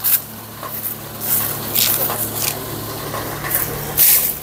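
An engine running steadily as a low hum, with dry maize husks and straw rustling a few times.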